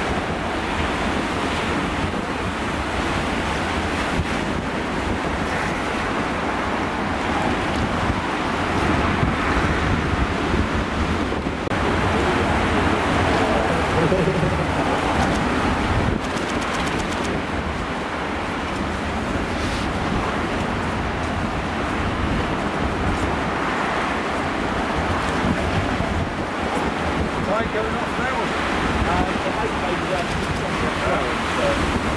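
Heavy storm surf breaking over rocks, with strong wind gusting across the microphone: a steady, loud wash of noise that swells a little about halfway through.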